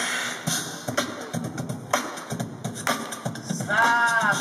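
Beatboxing through a microphone and PA: a rhythmic run of mouth-made kick-drum and snare-like hits.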